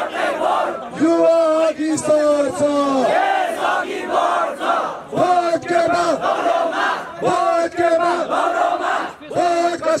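A crowd chanting political slogans, led by a man shouting them into a handheld microphone, in short repeated shouted phrases with long held notes.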